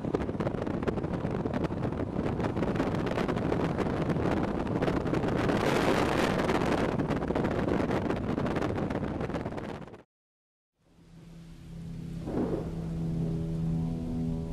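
Heavy wind buffeting and rushing road noise from a moving vehicle, gusting hard on the microphone. It cuts off abruptly about ten seconds in. After a brief silence, soft sustained music over a rain-like hiss begins.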